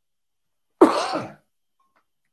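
A man clears his throat once, a short rasping burst about a second in.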